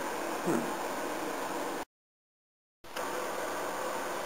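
Steady hiss of room tone and microphone noise, with a brief murmured vocal sound about half a second in. Just before the middle the sound cuts out to total silence for about a second at an edit between clips, then the hiss resumes.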